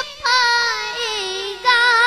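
A boy singing an Urdu naat into a microphone, holding long wavering notes. After a short breath near the start, the line slides slowly down in pitch and climbs back up near the end.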